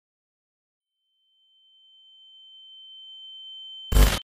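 A steady high-pitched electronic tone fades in about a second in and grows slowly louder, then is cut off near the end by a short, loud burst of TV static noise as the picture glitches.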